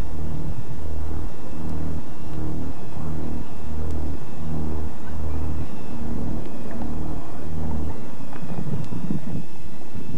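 Low synth drone of a horror score, pulsing in even throbs about half a second long, which stop about eight seconds in and give way to a rougher rumbling noise.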